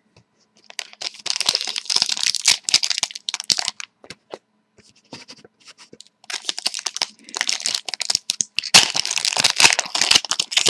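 Foil wrapper of a 2011-12 Panini Contenders hockey card pack crinkling and being torn open by hand, in two spells of crackly rustling: about one to four seconds in, and again from about six seconds on, with a few scattered crackles between.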